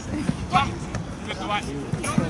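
Football players' short shouts on an outdoor pitch, with a dull thud of the ball being struck about a quarter of a second in.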